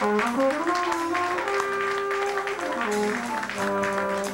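Live jazz quintet playing: a brass horn line, its notes sliding up and down between pitches, over piano, upright bass and drums.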